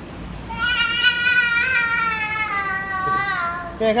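A toddler's long, drawn-out wail: one held, high-pitched cry that starts about half a second in, lasts about three seconds and slowly falls in pitch.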